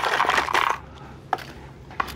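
Cardboard box being handled and opened by hand: a rustling, scraping stretch, then a couple of sharp light clicks.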